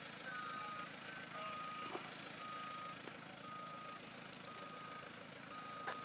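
Distant backup alarm beeping, one beep about every second, faint over outdoor background noise.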